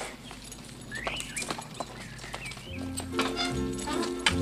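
A harnessed horse standing at a carriage, its hooves giving a few scattered knocks on the road. About three seconds in, film score music comes in with low sustained notes.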